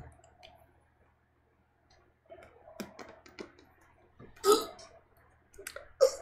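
A man's mouth noises: scattered faint tongue and lip clicks, with a short throaty sound of disgust about four and a half seconds in.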